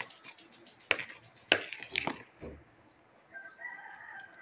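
A metal spoon stirring a thick creamy coconut and jelly mixture in a bowl, knocking and scraping against the bowl about five times. A rooster crows in the background near the end.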